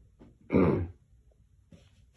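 A person's short, wordless 'hm' with a falling pitch, about half a second in, lasting under half a second.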